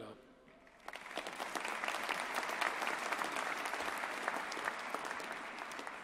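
Audience applauding, starting about a second in and tapering off near the end.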